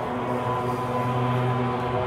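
Live rock band playing a sustained, droning passage: steady held chords with no sharp drum hits.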